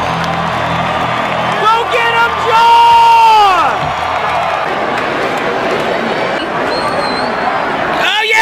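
Baseball stadium crowd noise, with nearby fans shouting: a few short yells about two seconds in, then a long drawn-out yell that slides down in pitch.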